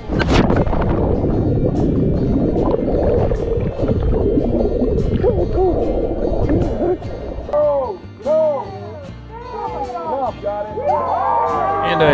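A jumper plunging into a river, heard through an action camera that goes underwater with them: a splash of entry, then several seconds of dense churning water and bubbles. In the second half come short gurgling bubble chirps that rise and fall in pitch.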